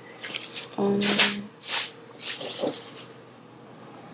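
Rustling and handling noises in a few short bursts, with a brief hummed voice sound about a second in, then quieter room sound.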